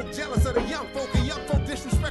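Hip-hop song: rapped vocals over a beat with heavy, regular kick-drum hits.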